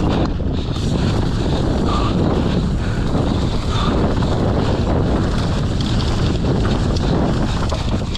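Wind rushing over an action camera's microphone at riding speed, with the mountain bike's tyres rumbling and its frame and parts rattling over dry, rocky dirt.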